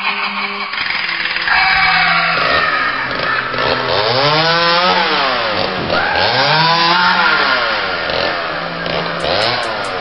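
Loud horror-trailer soundtrack: a dense, noisy drone with pitch sweeps that rise and fall again and again, every second or two.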